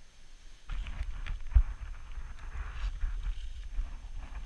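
Rustling and light knocking of leaves, twigs and clothing as the trap set is handled and the body-worn camera shifts, over a low rumble of handling on the microphone, with one sharper knock about a second and a half in.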